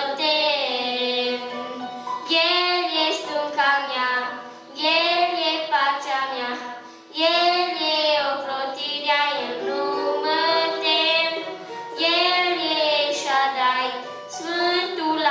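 A boy singing a Christian song in Romanian through a microphone, in phrases of a few seconds with short breaths between them, over a keyboard accompaniment.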